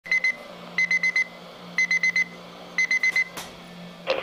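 Midland weather radio sounding its alert alarm: rapid groups of four short, high-pitched beeps repeating about once a second, signalling that a weather warning has been received. A faint steady hum runs underneath, and a single click comes near the end as the beeping stops.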